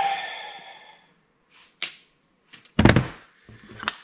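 Small steel parts from a power jack's gearbox clink and ring briefly against metal, then a sharp click and a heavy thunk as the metal gearbox housing is handled and set against the workbench.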